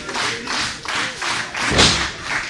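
Wrestling crowd clapping in a steady rhythm in a hall, with one heavy thump near the end, the loudest sound.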